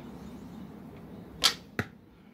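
A recurve bow loosed with a thumb ring: one sharp twang of the string as the arrow comes off the bow about one and a half seconds in, followed about a third of a second later by a second, shorter knock.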